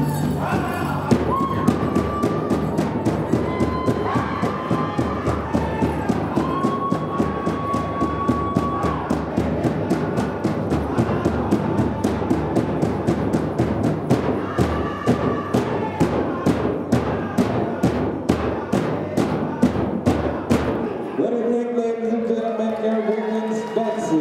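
Powwow drum group: a large bass drum struck in a steady beat, about three beats a second, under high-pitched group singing. The drumming stops abruptly about 21 seconds in, ending the song.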